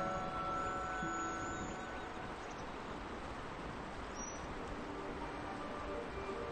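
Soft background music fading out over the first two seconds, leaving a steady faint rushing noise with two brief high chirps.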